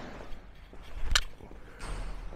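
Light movement sounds of a catcher in full gear rising from the crouch and throwing a baseball at half speed, with one sharp knock just over a second in.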